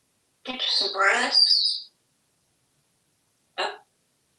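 African grey parrot vocalizing: an indistinct, speech-like mumble lasting over a second that ends in a high whistle, then a short squawk near the end.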